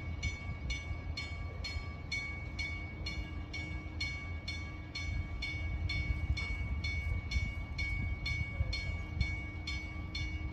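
Drawbridge warning bell ringing in rapid, even strokes, about two a second, signalling that the bridge is about to open. A low rumble runs underneath.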